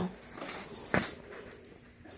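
Alaskan malamute making quiet whining vocal sounds, with one short sharp sound about a second in.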